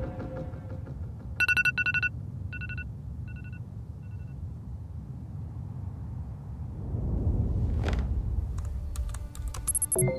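Mobile phone ringtone or alarm: a trilling electronic tone, then three shorter repeats, each fainter. A low rumble swells about seven seconds in, with a few clicks and a short high beep near the end.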